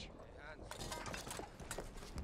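A faint voice briefly, then a run of quick, light clicks and clatter starting about two-thirds of a second in.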